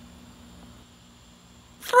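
Faint steady outdoor background noise with a low hum, and no distinct event; a voice starts speaking near the end.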